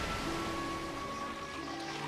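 Anime soundtrack: the rumble of heavy earth crumbling, fading away from a loud crash, under music with a few held tones.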